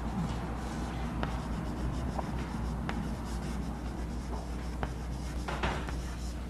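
Chalk writing on a blackboard: soft scratchy strokes with a few sharp taps as letters are formed, and a louder scrape near the end. A steady low hum runs underneath.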